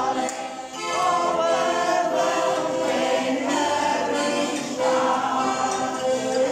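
Group of voices singing to a piano accordion accompaniment. There is a short dip just before one second, then the singing picks up again with long held notes.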